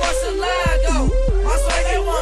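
Hip hop track: rapping over a beat with a deep bass and a short melody line that repeats about every second.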